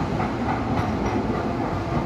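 Docklands Light Railway train departing, its cars passing close by with a loud, steady running noise of wheels on rails and electric traction.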